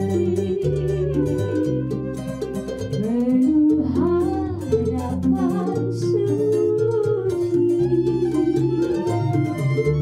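Keroncong ensemble playing: a woman sings the melody over flute and violin, while small ukulele-like lutes (cak and cuk) and guitar strum a steady plucked rhythm above a low plucked bass line.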